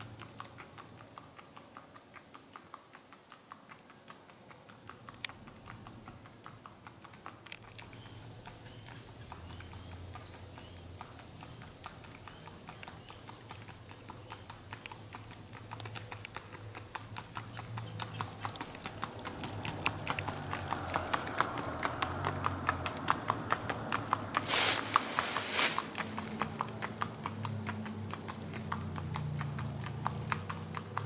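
A horse's hooves clip-clopping on asphalt at a flat foot walk, a quick even four-beat gait, growing louder about two-thirds of the way through as the horse comes closer. Two short loud bursts of noise come near the end.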